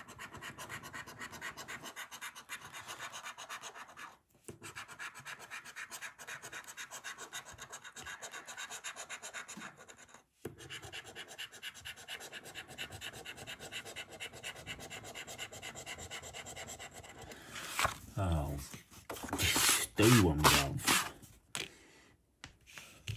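A coin scratching the scratch-off coating from a paper scratchcard, a fast continuous rasping of short strokes, broken by two brief pauses. Near the end the scratching gives way to a man's voice, a few short vocal sounds.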